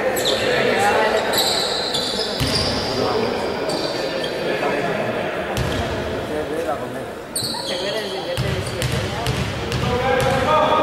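Indistinct voices echoing in a large sports hall during a basketball game, with a basketball bouncing on the wooden court.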